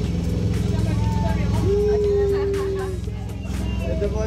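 Small harbour ferry's engine running steadily, a low even drone heard from inside the passenger cabin, with voices and music over it.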